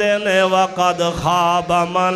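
A man's voice reciting in a drawn-out, melodic chant, typical of a preacher intoning a Quranic verse, with a steady low hum underneath.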